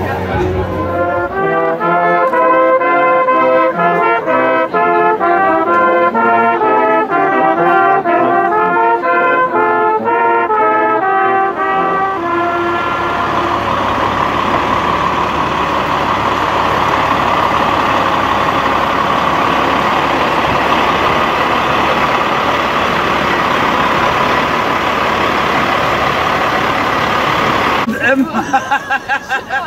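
Brass instruments playing a melody, note by note, for about the first twelve seconds. Then a Freightliner truck's diesel engine runs steadily as the truck drives slowly in, an even noise with no clear pitch.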